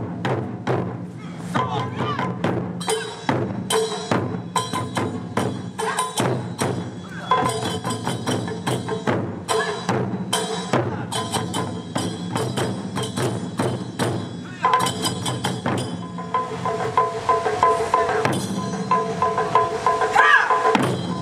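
Taiko drums played by an ensemble, struck with wooden sticks in a fast, steady rhythm of many strokes. Sustained pitched tones sound over the drumming for stretches of several seconds.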